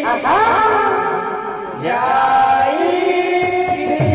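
Voices singing a devotional Sambalpuri kirtan chant in long held, sliding notes, with a new phrase starting about halfway through.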